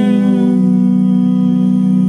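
Band's voices holding the final chord of a bluegrass gospel song in close harmony, one long sustained chord with its upper overtones slowly thinning out.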